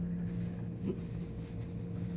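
Room tone: a steady low electrical hum, with faint rustling in the first part.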